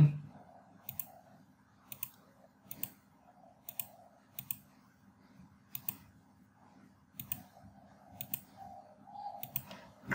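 Computer mouse clicking keys on a Casio scientific-calculator emulator: nine single sharp clicks at an uneven pace of about one a second, one per key entered.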